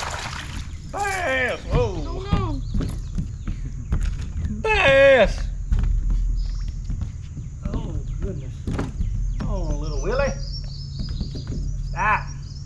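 A hooked bass splashing at the surface just off the boat's bow at the start. Short shouts and exclamations follow as the fish is reeled in and landed.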